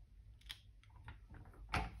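Faint plastic clicks and taps from a Vaessen Creative stamping platform as hands press the clear stamp plate down and then swing it open, louder near the end.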